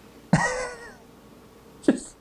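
A man's short laugh: a sudden voiced burst about a third of a second in that falls in pitch and fades, then another sharp, breathy laugh near the end.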